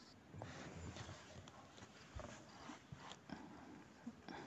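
Near silence: room tone with a few faint, scattered rustles and small clicks.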